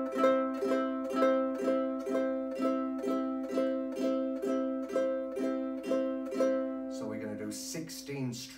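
Ukulele strumming a C major chord in slow, even down-strokes, about two to three strums a second. The strumming stops about seven seconds in, leaving the chord ringing under a voice.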